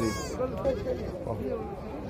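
A sheep gives one short, wavering, high bleat right at the start, with faint voices murmuring behind it.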